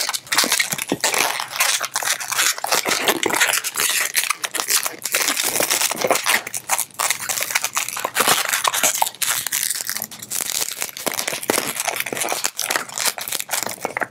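Latex twisting balloon being twisted into a one-finger bubble and pinch twists: continuous rubbing and crackling of rubber on rubber, with many small sharp creaks.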